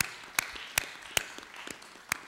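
Sparse applause from a small audience, led by one person's hand claps repeating steadily about two and a half times a second.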